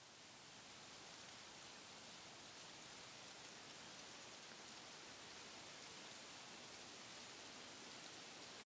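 Faint, steady hiss like light rain, fading in over the first second.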